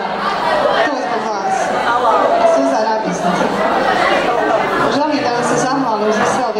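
Several voices talking at once: overlapping chatter in a large hall.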